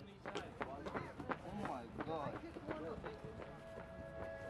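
Faint voices of footballers calling out during a training drill, with scattered short taps of feet moving on the pitch.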